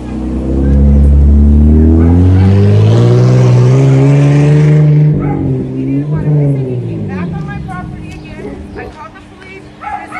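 A vehicle engine accelerating hard, its pitch climbing steadily for about five seconds, then dropping and fading away.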